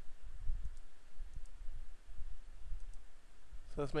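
A few faint computer mouse clicks over a low, steady rumble, as drop-down menus are opened in the software. A man starts speaking right at the end.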